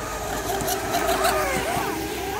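Radio-controlled model speedboat running at speed across a pond, its motor a steady whine.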